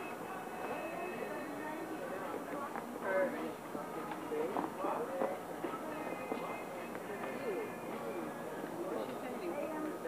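Indistinct talk of several people with music playing in the background, and a brief knock about three seconds in.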